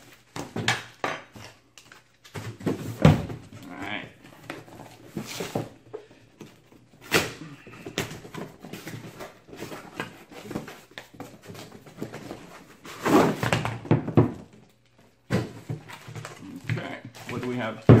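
Cardboard box opened by hand and tool packaging handled on a table: irregular rustles, tears and knocks.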